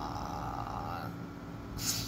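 A man's drawn-out, breathy 'uhh' while thinking, fading out about a second in, then a short sharp breath near the end.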